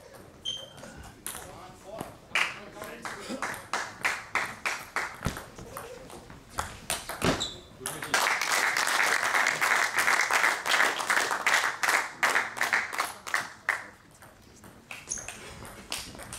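A celluloid table tennis ball clicking sharply off the bats and the table during serves and a rally, many quick ticks, with a stretch of louder background noise from about eight seconds in.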